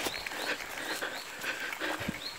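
Footsteps and the rustle of tall grass as someone picks their way down a steep overgrown bank, with faint short high chirps repeating in the background.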